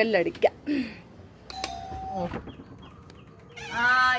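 A doorbell rings once, about one and a half seconds in: a short struck onset and a steady ringing tone that stops after under a second.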